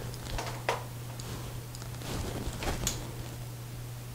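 Quiet indoor room tone with a steady low hum, broken by a few faint soft rustles and ticks from movement.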